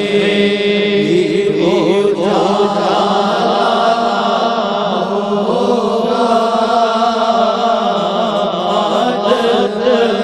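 A male voice singing a naat without instruments, an ornamented, wavering melodic line over a steady low held drone.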